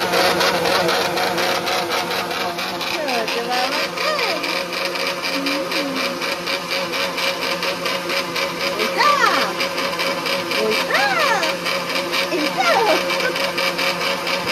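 Electric mixer grinder with a stainless-steel jar running steadily, a continuous motor noise with a steady hum.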